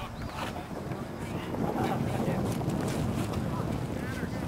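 Wind buffeting the camcorder microphone as a low rumble that grows louder about halfway through, with faint voices.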